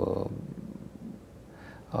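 A man's voice trailing off at the end of a word into a low, creaky drawl, then a short quiet hesitation pause before a drawn-out "uh" at the very end.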